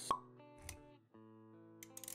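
A short pop sound effect about a tenth of a second in, over quiet background music with held notes, and a low thud near the middle. These are motion-graphics intro effects.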